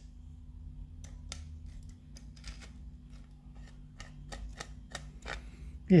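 Irregular light clicks and taps of a small screwdriver working at a triangular-head security screw in a plastic diecast display base, along with handling of the base, over a faint steady low hum.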